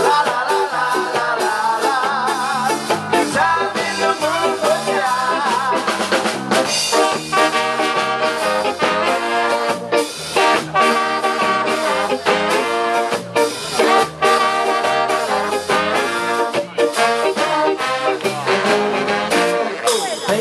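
Live ska band playing an instrumental passage: trumpet, trombone and saxophones carry the melody over drums, bass, guitar and keyboard, with a steady, driving beat.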